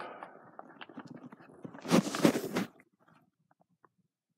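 A paper Happy Meal bag crinkling and rustling as it is handled, with one loud burst of crinkling about two seconds in, after which the sound cuts off.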